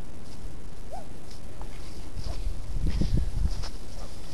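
Scattered knocks and crunches, thickest in the second half, over a low rumble on the microphone.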